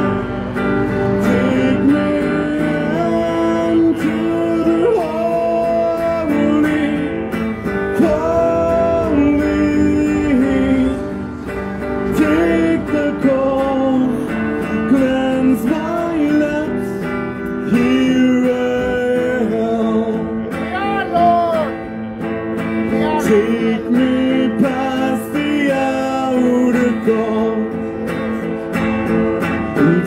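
A singer performing a song into a microphone, accompanying the voice on guitar.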